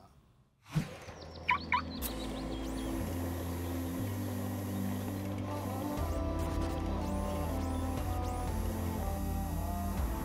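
Cartoon background music: a synthesized score with steady sustained bass notes and held chords, coming in about two seconds in. Before it come a short low thud and a couple of quick chirping effects.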